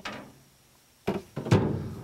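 A short quiet spell, then about a second in a knock followed by a louder low thump and rustling. This is handling noise as a cane pole and a spool of fishing line are moved about close to a clip-on microphone.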